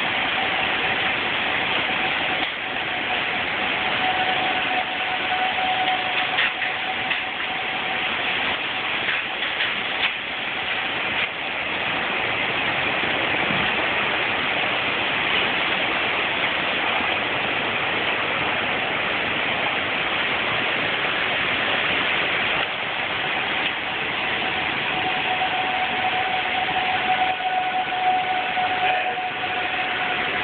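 Heavy rain and strong tornado winds making a loud, steady, unbroken rushing roar. A faint steady tone fades in and out over it.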